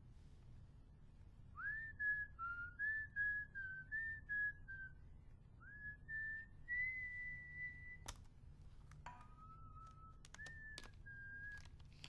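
Someone whistling a tune in short held notes with little slides between them, over a low steady hum. The whistling breaks off about eight seconds in with a few sharp clicks, then carries on briefly.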